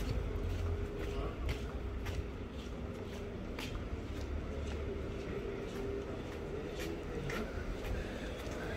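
Outdoor street ambience while walking: a steady low rumble of wind on the phone's microphone, a faint steady hum, and a few scattered light clicks.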